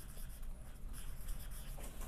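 Felt-tip marker writing on a whiteboard: the faint rubbing of the tip on the board as letters are written, over a low steady room hum.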